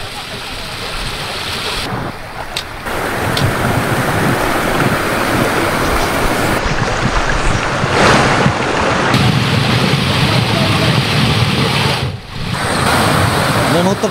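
Fast-flowing floodwater rushing over land, a steady, loud rush of water with wind on the microphone. It dips briefly twice, about two and twelve seconds in, and is loudest near the middle.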